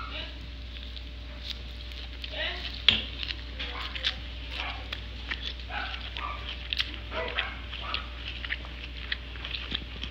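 A person chewing a mouthful of leafy salad, with wet mouth clicks and a few short voiced murmurs; a sharp click about three seconds in is the loudest sound.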